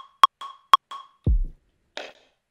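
Ableton Live's metronome ticking about four times a second, then a deep electronic kick drum sample with a falling pitch, played from a drum rack, and a hi-hat hit near the end.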